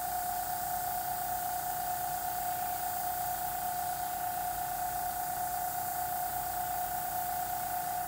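Fine gravity-feed airbrush spraying thinned paint, a steady even hiss of air with a steady high whine running under it.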